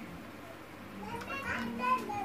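Children's voices, chattering and playing, coming in about a second in and growing louder.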